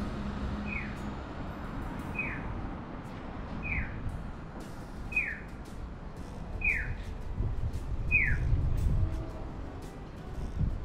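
Audible pedestrian crossing signal chirping: a single short falling bird-like tone, evenly repeated about every second and a half and growing louder, the last one near the end. Low traffic rumble lies beneath.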